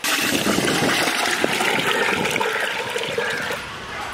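Water pouring in a thick stream from a plastic pot into a metal cooking pot, a steady splashing rush that ends shortly before the end.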